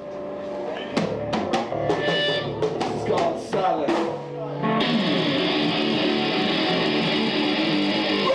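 Heavy metal band playing live, with distorted electric guitars, bass and a drum kit. Separate drum hits and guitar chords open the song, and about five seconds in the full band comes in with dense, steady playing.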